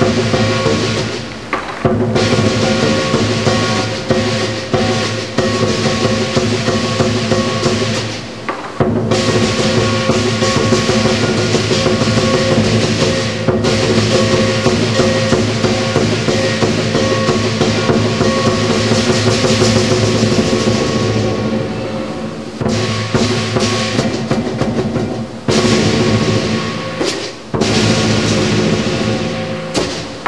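Southern lion dance percussion: a large lion drum beaten rapidly, with cymbals and gong clashing and ringing over it, breaking off briefly several times before starting again.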